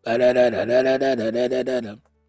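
A man's voice singing a wordless tune as a run of quick, evenly spaced notes, the pitch stepping up and down.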